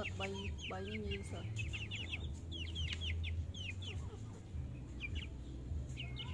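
Young chickens peeping: a rapid, continuous run of short, high, falling peeps, with a few lower warbling calls in the first second. A steady low hum runs underneath.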